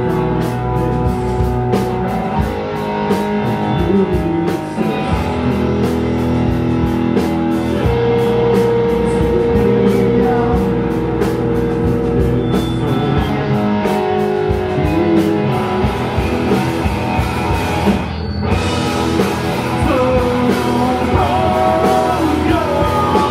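Rock band playing live: electric guitar, bass guitar and drum kit, with a short break about eighteen seconds in and sung vocals over the band near the end.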